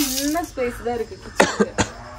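A voice speaking briefly, then two short, sharp coughs about a second and a half in.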